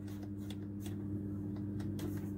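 Steady low mains-frequency hum from the speakers of a Sansui A-5 integrated amplifier, with a few faint clicks as its tone knobs are turned. The hum is unaffected by the volume control and is the amplifier's fault, which may lie in its STK465 power-amplifier module.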